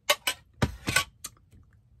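Tableware being handled: a few sharp clicks and clinks, a fuller knock a little over half a second in, then a couple of faint ticks.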